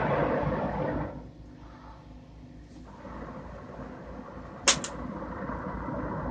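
Steady low rush of a lit Carlisle CC glass torch, louder for the first second and then settling lower, with a sharp double click about three quarters of the way through.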